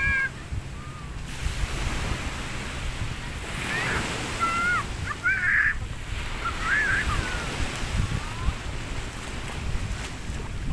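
Small waves washing onto a sand beach, with wind rumbling on the microphone. A few short, high, wavering calls come through in the middle.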